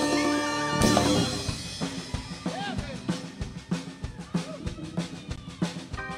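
A live band holds a final chord that ends with a loud hit about a second in. After that, the drum kit alone keeps a steady beat of kick drum and rim clicks.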